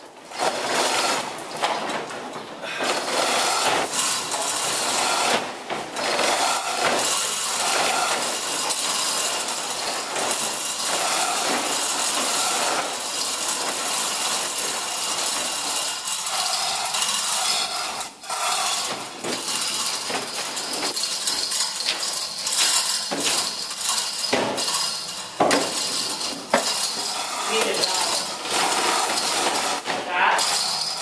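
Chain hoist rattling and clinking steadily as its hand chain is pulled hand over hand, with a few sharp knocks.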